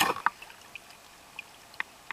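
Water splashing and sloshing right at the microphone in the first moments, then a few sharp drips.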